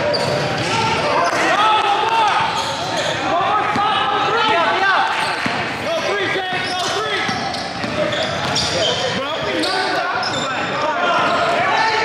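Live basketball game in a large gym: sneakers squeaking on the hardwood court, the ball bouncing, and players calling out to each other.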